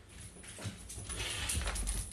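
A small dog scrambling up onto a bed: rustling bedding and a few soft knocks, building to a heavy thump of its landing near the end.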